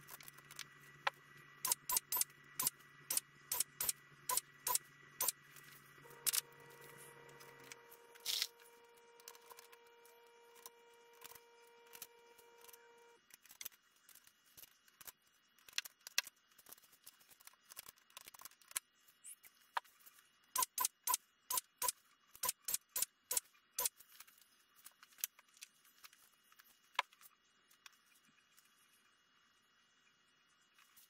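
Runs of sharp metallic clicks, sped up, from clecos and cleco pliers being worked on an aluminium RV-10 rudder skeleton.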